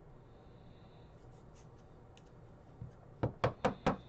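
Plastic card sleeve and rigid clear card holder being handled: soft rubbing and faint ticks, then four quick sharp plastic clicks near the end as the sleeved trading card is fitted into the holder.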